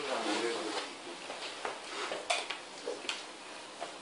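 Quiet classroom while students work: a faint voice trails off in the first second, then scattered light clicks and taps.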